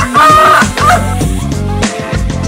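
Gamecock rooster crowing once, a short crow of about a second, over background music with a steady beat.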